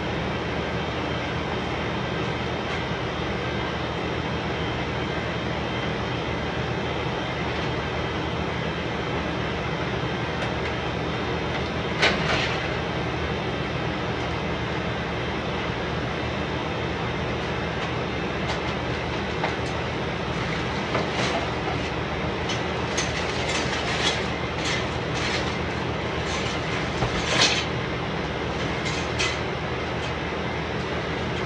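A steady rumbling hiss runs throughout, with one sharp knock about twelve seconds in and a run of knocks and clatters in the last third as metal frames and junk are moved about on a concrete floor.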